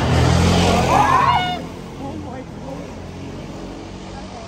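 A road vehicle's engine passing close by, loud for the first second and a half with a brief rise and fall in pitch as it goes, then fading to quieter street noise with voices.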